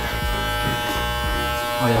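Electric hair clippers running with a steady buzz while cutting hair.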